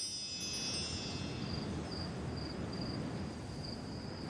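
Chimes tinkling and dying away over the first second, over crickets chirping steadily and a low background rumble.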